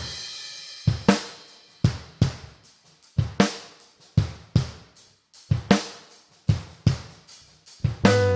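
Solo drum kit intro of an indie pop-rock song: a cymbal hit at the start, then kick, snare and hi-hat playing a steady beat with paired hits about once a second.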